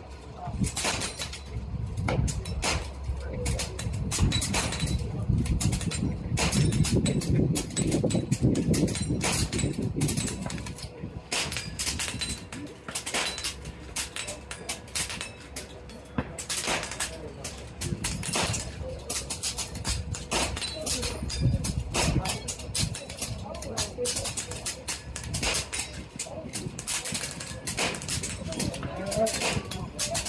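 Many air rifles firing along a benchrest line in a timed silhouette match: a rapid, irregular run of sharp shots, several a second at times, all the way through. A low rumble runs under the shots for the first third.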